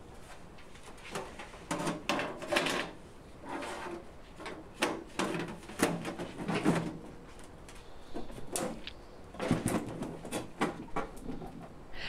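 A Paragon SC-series electric kiln's steel case and its loose sheet-metal back panel and bottom pan knocking and scraping as they are handled and the kiln is tilted upright: irregular clunks and rattles throughout.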